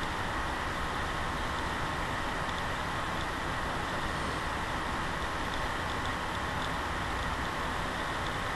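Steady, even hiss of room noise picked up by a webcam microphone, with no distinct events.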